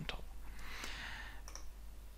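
Two faint computer mouse clicks, about a second and a second and a half in, as an on-screen option is selected, with a soft hiss around the first click.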